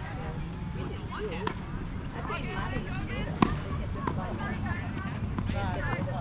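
Tennis balls being struck by racquets and bouncing on the court during a doubles rally: a few sharp pops, the loudest a little past halfway, with players' voices in the background.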